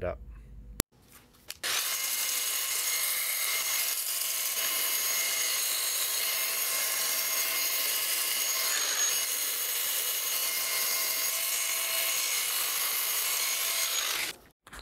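Electric belt sander running steadily, its abrasive belt wrapped around a chrome-plated tubular front axle, grinding off chrome and rust to clean up a cracked weld. It starts about two seconds in as a steady, high-pitched grinding hiss.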